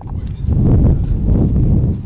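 Wind buffeting the camera microphone outdoors: a loud, uneven low rumble that fades in at the start.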